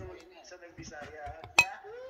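A single sharp clink of cutlery against a dish, with a short ring, about one and a half seconds in, among conversation.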